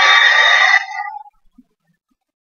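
A loud, drawn-out high-pitched cry that ends with a falling note and breaks off a little over a second in.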